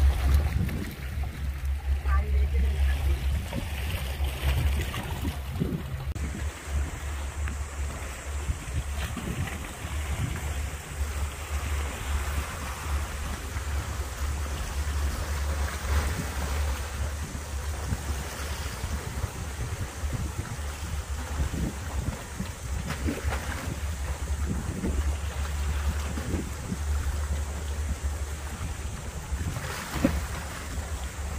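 Wind buffeting the microphone, a low uneven rumble that runs on throughout, with the sea washing against the rocks in the background.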